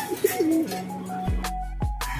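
Domestic pigeons cooing over background music, with a brief dip in the sound near the end.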